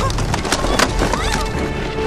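Scuffle with sharp wooden knocks and clatter, three strikes within the first second, as a wooden carrying pole knocks about. A sustained music score plays underneath.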